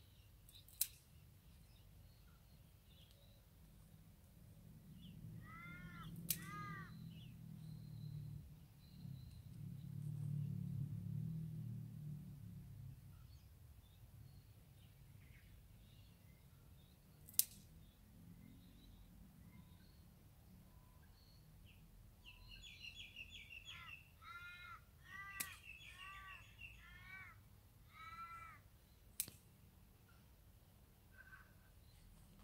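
A crow cawing: two calls about six seconds in and a run of calls near the end. A low rumble swells and fades in the middle, and a few sharp clicks fall between the calls.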